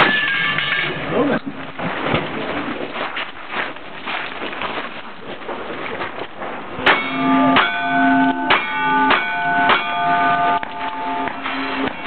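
A string of about six revolver shots in quick succession, starting about seven seconds in, each followed by the ringing of a struck steel target. Near the start, a steel target is still ringing from a rifle hit.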